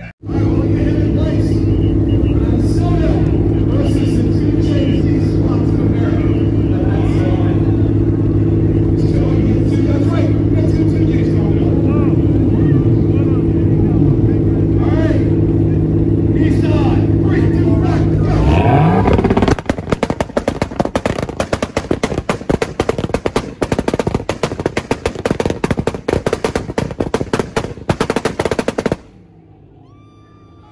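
Tuned car engines held at high, steady revs in a rev battle. About two-thirds in this gives way to a rapid, irregular string of exhaust pops and bangs from a two-step launch limiter, which stops abruptly near the end.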